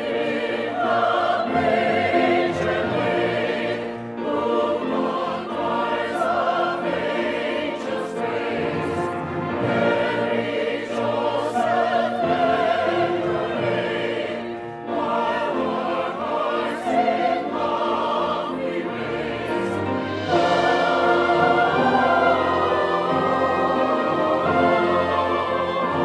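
A mixed church choir singing a Christmas canticle, accompanied by a small string ensemble of violins. The music swells louder about twenty seconds in.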